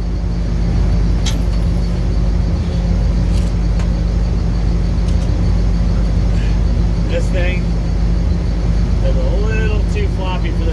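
Steady, loud, low machinery drone with a constant pitch, with a few light metallic clicks from the axle and jack being moved. A brief mumbled voice is heard near the end.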